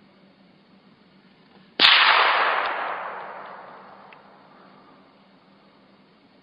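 A single gunshot about two seconds in, with a long echoing tail that dies away over the next two to three seconds.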